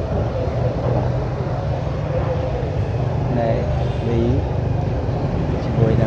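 Scooter engine idling with a steady low rumble, with voices talking over it partway through.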